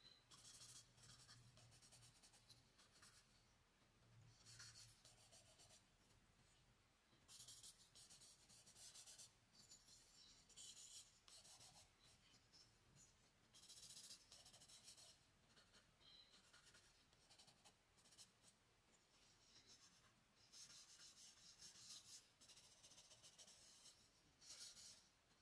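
Charcoal stick drawn across drawing paper in a series of short strokes, a faint, dry scratching hiss that comes and goes.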